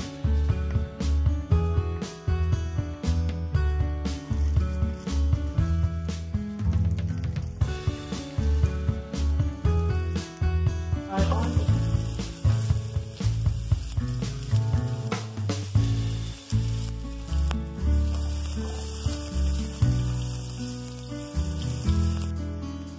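Diced sausage frying in oil in a nonstick pan, sizzling. The sizzle grows louder about halfway through, as chopped onion goes into the hot oil. Background music with a strong bass line plays throughout.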